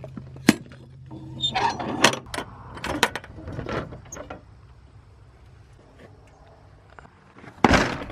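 Metal latch and lock bar of a steel horse-trailer door being worked by hand: sharp clanks and rattles as it is lifted and slid, quieter for a few seconds, then one loud clank near the end.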